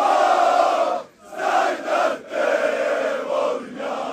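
Large crowd of football supporters chanting a song in unison. Loud male voices sing long phrases broken by brief pauses about a second in, about two seconds in and near the end.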